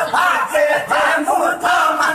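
A crowd of men loudly chanting a Sindhi naat refrain together, in short repeated phrases.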